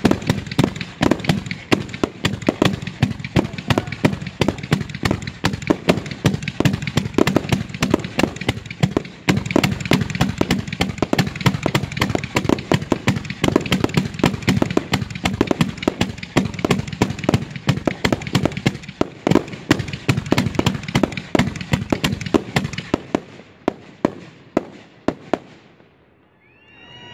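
Fireworks finale barrage: a dense, rapid run of launches and aerial bursts, many reports a second. It thins out and dies away in the last few seconds.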